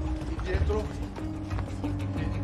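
Hospital gurney rattling and clicking as it is wheeled along, over a low sustained music score, with a brief voice about half a second in.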